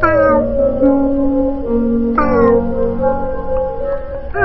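Background music of held notes with two cat meows over it, each falling in pitch: one at the start and one about two seconds in.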